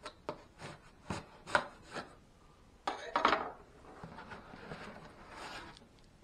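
Cardboard box being handled and opened by hand: a few sharp taps and knocks in the first two seconds, a louder scraping burst about three seconds in, then the cardboard flaps rubbing and sliding.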